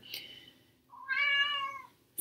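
A house cat meowing once, a single drawn-out meow of about a second that starts about a second in.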